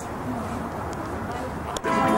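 A car engine idling with a steady low rumble. Near the end a click, and the car radio comes on loud with an announcer and music.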